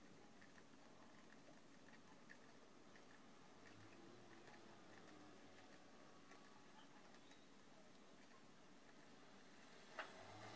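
Near silence, with faint, irregular light ticks of metal circular knitting needles as stitches are worked.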